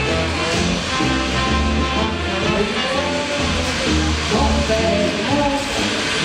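Background music: a tune of held, stepping notes over a bass line.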